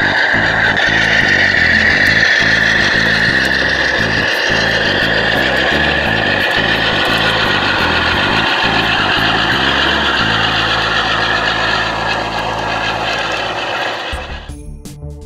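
Model Santa Fe diesel locomotives running past with a diesel engine sound and a steady high whine that drifts slightly in pitch. Light clicks from the wheels run through it. The engine sound evens out about two-thirds of the way in.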